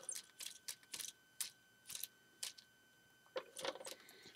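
Faint, irregular plastic clicks and clacks from a LEGO Hero Factory Dragon Bolt model's button-driven wing mechanism, as the button is pressed over and over and the wings flap up and down.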